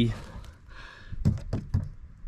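A run of about half a dozen light clicks and taps in quick succession in the second half, as a hand handles the plastic clip latches of a kayak's pedal-drive mount.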